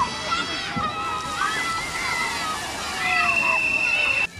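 Splashing water at a children's water playground, with children shrieking and shouting over it. A long, steady high-pitched note starts about three seconds in.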